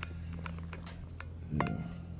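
Light clicks and taps of a small RC rock crawler being handled and set down with its suspension flexed, over a steady low hum. A short voiced sound comes late on.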